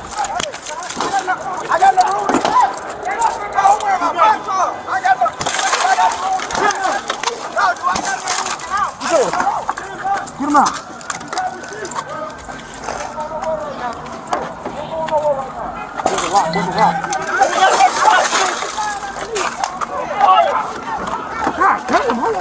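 Several people shouting over one another in a chaotic emergency. Twice, a few seconds in and again near the end, a burst of hissing noise lasting about a second rises over the voices.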